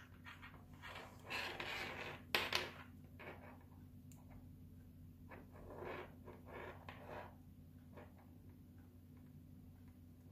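Soft handling of a small plastic LED head torch and its cable, with a few faint clicks from its push-button switch; the sharpest click comes about two and a half seconds in.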